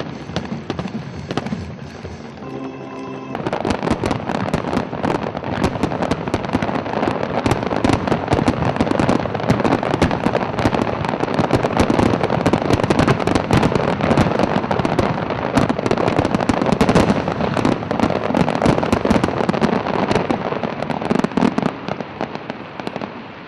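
Music for the first few seconds, then a dense, continuous barrage of firework bangs and crackles from about three seconds in.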